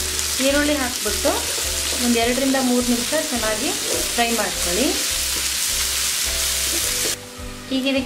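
Chopped onions, green chillies and ginger-garlic paste frying in oil in a non-stick pan, a steady sizzle with a spatula stirring through it. The sizzle cuts off suddenly about seven seconds in.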